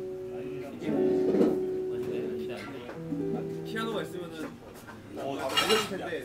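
Acoustic guitar strummed in an informal jam, with a melody of long held notes over it. Voices break in near the end with a short, loud outburst.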